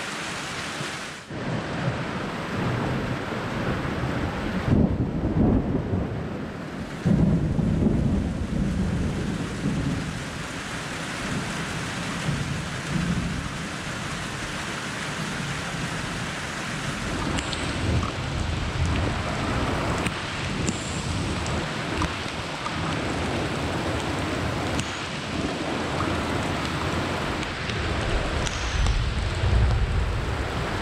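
Steady heavy rain from a summer thunderstorm, with low rolls of thunder rumbling about five and eight seconds in and again near the end.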